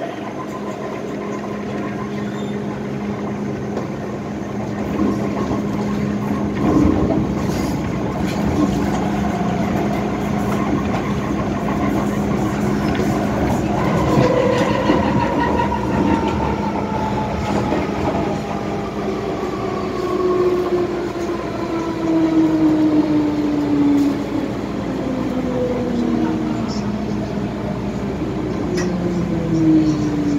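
MTR M-Train electric multiple unit heard from inside the carriage while running, with a steady low hum. About halfway through, a whine sets in and falls steadily in pitch as the train slows into a station, over rail running noise with a few knocks.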